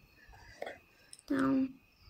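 A woman's soft voice between words: a faint whisper or breath, then one short voiced sound held on a steady pitch for under half a second, about a second and a half in.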